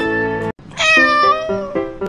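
Cheerful instrumental backing music for a children's rhyme breaks off about half a second in. Then a single long cat meow, falling slightly in pitch, sounds as a new tune starts under it.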